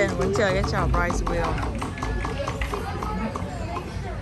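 People's voices talking, loudest in the first second, over background music.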